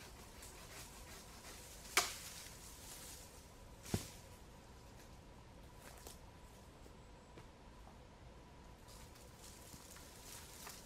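Quiet woodland with two sharp cracks about two seconds apart, the first louder, and a few fainter ticks later, from a man handling a hanging branch and a hand saw.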